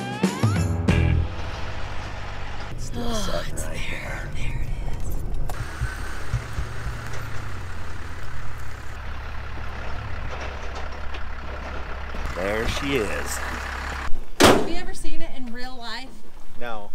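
Low steady rumble of a truck running, with brief indistinct voices over it. Background music ends about a second in, and the rumble cuts off sharply near the end as louder talking begins.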